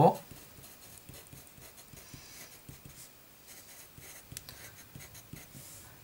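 Pencil writing numbers on paper: a run of short, faint scratching strokes.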